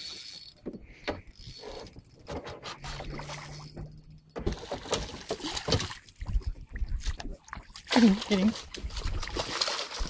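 Fishing reel winding in line with rapid mechanical clicks, and water splashing as a hooked salmon thrashes at the surface beside the boat. A short shout comes near the end.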